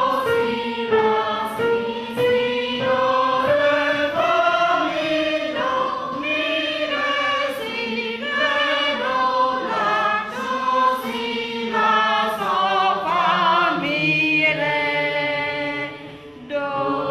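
A choir singing a slow melody in long held notes that step from pitch to pitch, with vibrato on a note a few seconds before the end.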